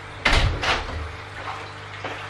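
A door being shut: a sudden thud about a quarter second in, then a second, smaller knock, dying away within a second.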